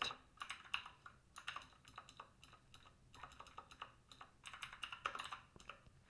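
Computer keyboard typing: quiet, irregular keystrokes in short runs with brief pauses, as lines of code are edited.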